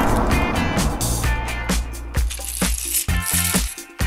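Background music: a light tune of short high notes over a low bass line, with a rushing noise fading out in the first second.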